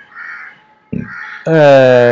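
A crow cawing twice, faintly, in the background.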